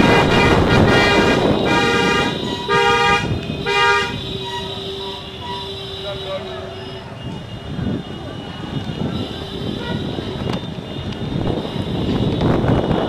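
Vehicle horns honking in a string of short blasts over the first four seconds, then fading into the noise of slow road traffic.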